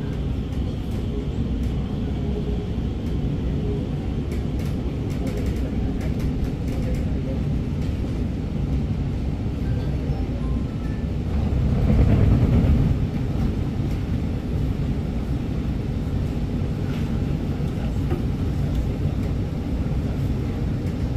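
Inside the car of an Alstom MOVIA R151 metro train running and slowing to a stop at a station: a steady low rumble of wheels on rail, which swells for a moment about twelve seconds in.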